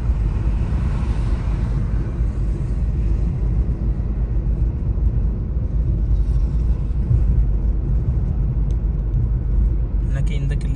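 Steady low rumble of a car driving at road speed: engine and tyre noise with no sudden events.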